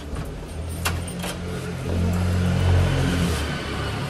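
Low engine rumble of a vehicle, swelling in the middle and easing off near the end, with two short clicks about a second in.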